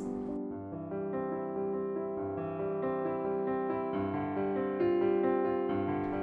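Background music: a slow keyboard melody over sustained chords, the notes changing about every half second.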